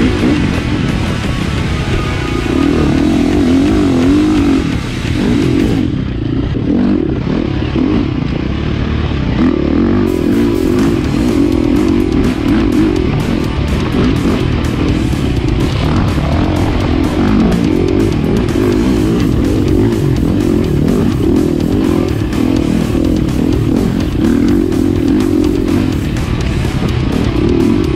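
Husqvarna dirt bike engine being ridden, its note rising and falling with the throttle, under guitar music.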